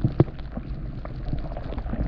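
Water heard from under the surface through an underwater camera: a muffled low rumble with scattered small clicks and ticks, and one sharper click just after it starts.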